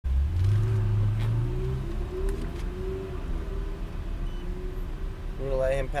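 Lamborghini Huracán LP610-4's 5.2-litre V10 running at low speed, heard inside the cabin. Its note rises just after the start, holds for under two seconds, then settles to a quieter steady run; a voice starts near the end.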